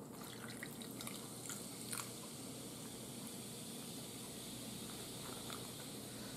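Shasta strawberry soda poured from a can over ice into a glass: faint running and dripping of liquid with a few small ticks.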